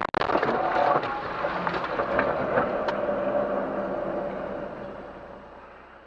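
Car collision heard from inside the dash-cam car: a loud impact right at the start, followed by a sustained noisy sound with a faint steady tone that slowly fades away over about five seconds.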